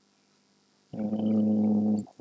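A man's voice holding one flat hesitation sound, a drawn-out "uhh", for about a second, beginning about a second in after a silent pause.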